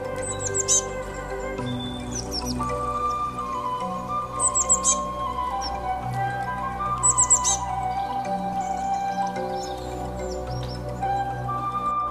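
Background music of slow, held notes. Over it, short high chirps falling in pitch come in quick clusters about four times.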